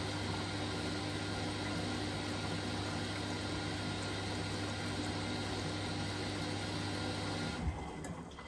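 Hyundai HY8-5SL (Vestel-built) front-loading washing machine on a boil wash, its drum motor running steadily with a low hum as the wet load tumbles. Near the end the motor cuts out suddenly with a soft thump.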